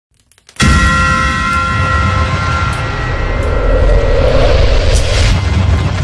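Cinematic logo-intro sound effect: a sudden loud hit about half a second in, then a sustained low rumble with held high tones over it, swelling near the end.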